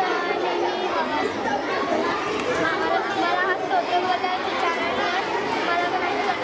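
Several children's voices chattering over one another close to the microphone, a group of schoolgirls talking at once.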